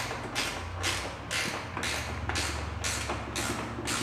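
Wrench tightening a bolt on a golf cart's mirror bracket and roof support: a regular run of short scraping strokes, about two or three a second.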